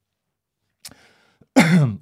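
A man clears his throat once near the end, a short rough sound falling in pitch, after a small mouth click and a faint breath.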